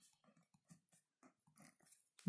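Near silence, with faint scratches of a pen writing on paper.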